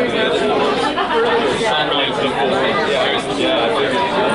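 Many people talking at once in a large room, a steady hubbub of overlapping voices with no music playing.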